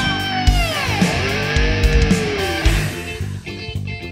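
Funk/djent metal instrumental: electric guitar over bass and drums. In the first couple of seconds a line slides down and arches up in pitch over the drum hits, then the playing turns choppy and stop-start near the end.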